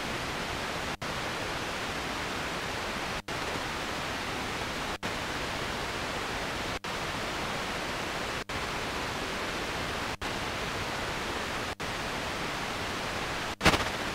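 FM static hiss from an Eton G3 radio tuned between stations, cut by a very short silent gap about every second and a half as the frequency is stepped up, with a brief louder burst near the end.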